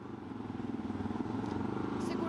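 A motor vehicle's engine running on the street, a steady low hum that grows gradually louder as it approaches.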